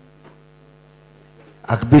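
Steady low electrical mains hum from the public-address sound system during a pause in the talk. A man's voice over the microphone starts near the end.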